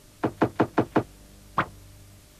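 Sound effect of a TV programme's logo sting: five quick, sharp knocks in about a second, then a single knock about half a second later.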